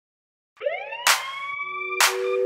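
A synthesized TV-channel ident sound effect starting about half a second in: a pitched tone that glides upward and levels off, with a short whoosh about a second in.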